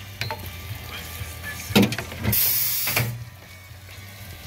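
Backyard roller coaster car clunking into the station at the end of the ride, with a sharp knock a little under two seconds in, then a short burst of hissing lasting under a second.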